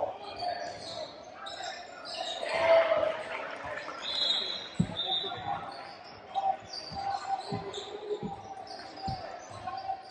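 A basketball bouncing on a hardwood gym floor, a few separate bounces in the second half, over voices and chatter echoing in a large gym. A brief high steady tone sounds about four seconds in.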